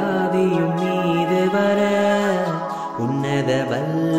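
A song: a singer holding long, wavering notes over musical accompaniment, the melody moving to new notes twice.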